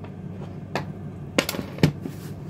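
A few sharp knocks and clicks of cookware and utensils being handled on a kitchen worktop, the loudest near the end, over a low steady hum.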